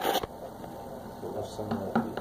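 Low steady electrical hum with faint room noise, after a short noisy burst right at the start.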